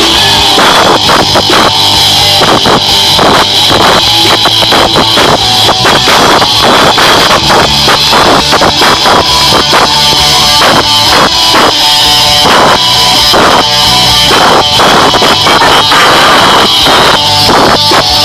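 Live rock band playing loudly: drum kit, electric bass and electric guitar.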